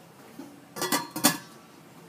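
Stainless steel pot lid set down onto a stainless steel pot: two quick metallic clinks just under a second apart, with a brief ring as the lid settles on the rim.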